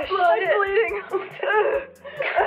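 A woman's voice making wordless, speech-like sounds, the pitch sliding up and down, then fading out near the end.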